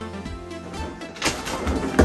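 Background music, with rubbing and handling noise of latex balloons being tied and pressed together from about a second in, loudest near the end.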